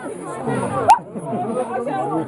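Several people talking and calling out at once, with overlapping voices, and one sharp click just under a second in.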